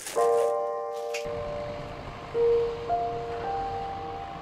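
Background music of slow, held notes, a new note coming in every second or so.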